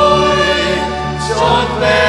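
Church choir singing a hymn in several voice parts, holding long notes over a steady low accompaniment, with a change of chord about one and a half seconds in.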